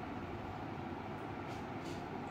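Steady low background hum and hiss of room noise, with a few faint small ticks near the end.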